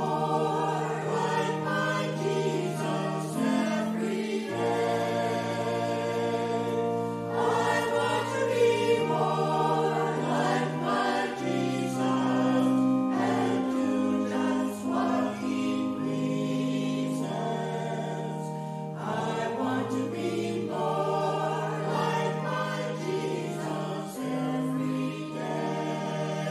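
Church choir singing over accompaniment that holds long, steady low chords, changing every second or few.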